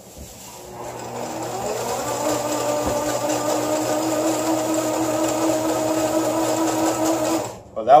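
Line-spooling rig winding 130 lb hollow-core braid onto an Avet LX Raptor reel: a steady whir that climbs in pitch as it spins up about a second in, runs evenly, and stops shortly before the end as a layer of line is finished.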